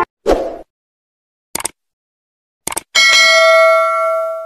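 Subscribe-button animation sound effects: a short pop, a single click, a quick double click, then a bright bell ding that rings on for about a second and a half.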